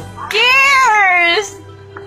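A woman's long, high wailing cry, rising and then falling over about a second, over background music.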